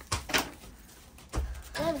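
A paper greeting-card envelope being handled and pried at, giving a few short paper crackles. A child starts to speak near the end.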